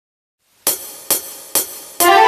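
Backing-track count-in: three sharp cymbal-like drum-machine ticks, evenly spaced about half a second apart, after a brief silence at the start.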